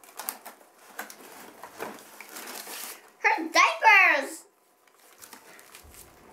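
Small clicks and rustling as toy packaging is cut and trading cards are handled. About three seconds in comes a child's loud, drawn-out vocal sound that rises and falls in pitch, the loudest thing heard.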